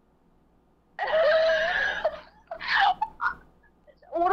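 A person's voice making a drawn-out, wavering sound without words, about a second long and starting a second in, then two shorter ones.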